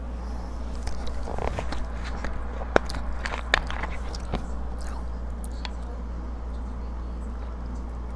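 Plastic soda bottle being handled and its screw cap twisted off: a run of small clicks and crackles with one sharp click near the middle, then quiet apart from a steady low hum.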